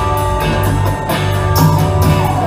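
Rock band playing live in a guitar-led instrumental passage, with no vocals, electric guitars holding sustained notes over bass and steady beat.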